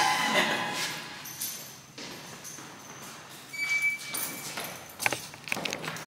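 A few footsteps and light thuds on a hard hallway floor, sparse and bunched mostly in the last two seconds.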